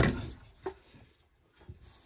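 Handling noise from a gas water heater's steel-and-copper heat-exchanger assembly being turned over in gloved hands. A rustling scrape fades out at the start, one short knock comes a little over half a second in, and a couple of faint taps follow.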